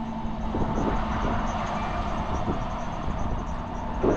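Tractor engine running steadily while driving over the field: an even, unbroken drone with a faint low hum under it.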